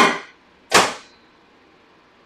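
A microwave oven door being shut with a single sharp clunk, about two-thirds of a second in.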